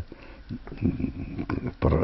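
A man's soft breathing and throat noises, with a sniff and a few small mouth clicks, as he pauses between sentences.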